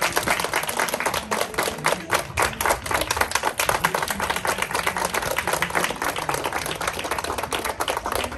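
A group of children and adults applauding: many hands clapping at once in a dense, steady patter.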